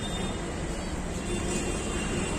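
Steady street traffic noise: the running engines and tyres of passing vehicles make a continuous low rumble, with no single event standing out.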